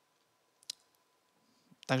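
A single short, sharp click about two-thirds of a second in, over near silence; a man starts speaking just before the end.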